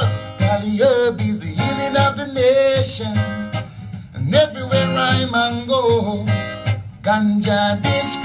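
Acoustic guitar strummed in a steady rhythm under a man's singing voice: live acoustic roots reggae.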